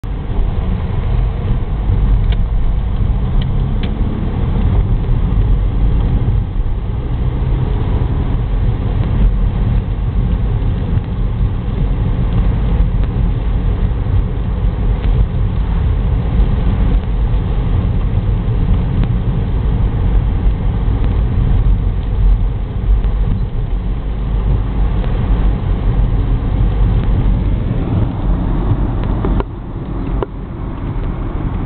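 Car cabin noise while driving: a steady low rumble of engine and tyres on wet road. It drops abruptly near the end.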